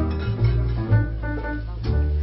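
Live jazz: a grand piano playing over a plucked upright double bass, whose low notes change every fraction of a second.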